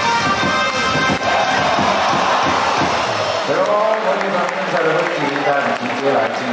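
Baseball cheer song playing loud over the stadium PA with a steady beat, cutting out about three and a half seconds in; crowd voices and cheering carry on after it.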